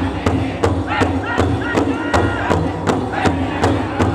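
Powwow drum group: several men striking one large hide drum together in a steady, even beat of about two and a half strokes a second, while singing a grass dance song in unison.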